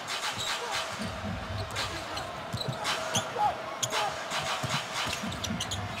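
Basketball being dribbled on a hardwood court, a series of short knocks, with occasional brief sneaker squeaks over the steady murmur of an arena crowd.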